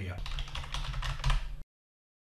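Rapid, irregular clicks of typing on a computer keyboard over a low rumble for about a second and a half, then an abrupt cut to silence.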